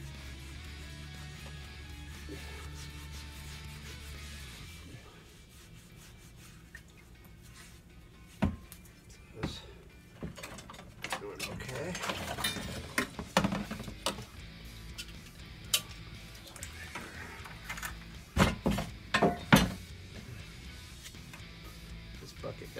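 Steel bumper brackets knocking and clinking against each other and the tub as they are handled and lifted out of a plastic tub of acid solution. Scattered sharp knocks, with the loudest cluster a few seconds before the end, over quiet background music.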